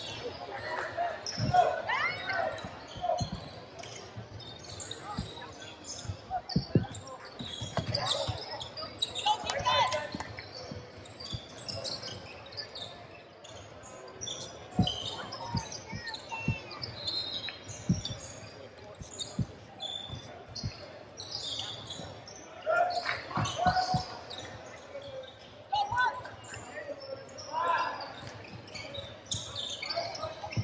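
Basketball being dribbled and bouncing on a hardwood gym floor in irregular sharp thuds, echoing in a large hall.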